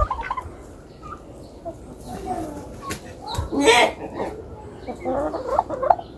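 Domestic poultry calling: scattered short clucks and calls, with a louder call just before the middle and a run of calls near the end.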